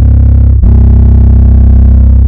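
Deep, distorted bass notes from a sampled drum-kit patch in a Kontakt library, held long and sustained, with a fresh note struck about half a second in.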